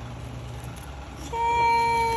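A steady, horn-like tone held flat for about a second, starting a little past halfway through.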